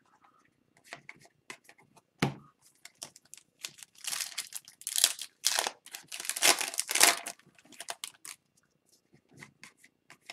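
Foil wrapper of an Upper Deck Series 1 hockey retail card pack being torn open and crinkled, with the cards inside handled and slid together. Scattered clicks and rustles, with the heaviest tearing and crinkling between about four and seven seconds in.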